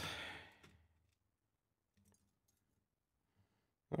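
A short breathy sigh as the voice trails off, then near silence with a few faint clicks.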